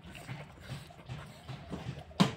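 A person chewing a mouthful of rice and pork close to the microphone, soft wet chews repeating about twice a second.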